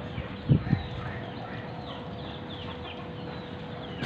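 Birds chirping with many short, falling calls over a steady outdoor background hum, with two short dull thumps about half a second in.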